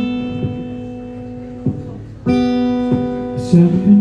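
Acoustic guitar strumming chords and letting them ring: one chord dies away, a second is struck a little after two seconds in, and a sung line comes in near the end.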